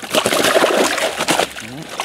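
A large carp thrashing in a landing net at the water's surface, splashing hard for about a second and a half before it eases off.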